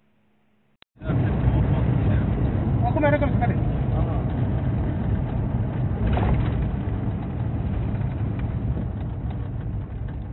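Road and engine noise of a car driving, heard from inside the cabin as a steady low rumble. It starts abruptly about a second in after near silence, with a brief pitched, wavering sound around three seconds in.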